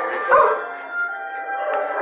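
A dog barks once, briefly, about a third of a second in.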